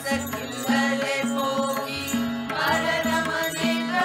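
A group of voices singing a Kannada devotional song (devaranama), accompanied by a harmonium's held reed chords and a tabla keeping a steady rhythm with ringing strokes.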